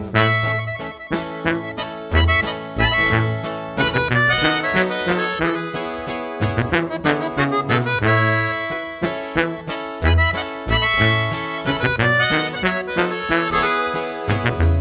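Instrumental break in a Mexican regional song: an accordion plays the melody over a pulsing bass line and a steady beat, with no singing.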